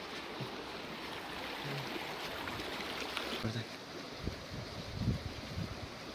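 Shallow rocky stream running, a steady rush of water, with a few dull thumps in the second half.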